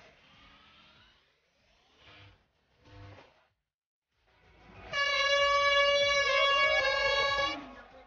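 Handheld aerosol air horn giving one loud, steady blast of about two and a half seconds, starting about five seconds in, with a second tone wavering near the end before it cuts off.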